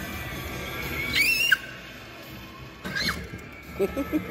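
Music from a coin-operated kiddie ride, with two sharp high-pitched squeals: one rises then drops about a second in, and a shorter one falls about three seconds in.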